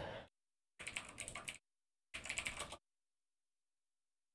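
Faint typing on a computer keyboard in two short runs of quick keystrokes, the first about a second in and the second just after two seconds.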